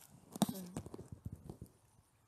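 A quick, uneven run of knocks and thuds, like footsteps on wooden boards, with the loudest knock about half a second in.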